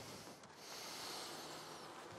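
Faint rubbing and scraping as the cover board is slid and lifted off the top of a nucleus hive box, starting about half a second in.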